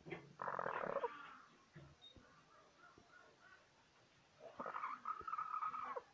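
Hen calling twice from a nest box: two drawn-out calls, each about a second long, the second one held on a flat pitch, about four seconds apart.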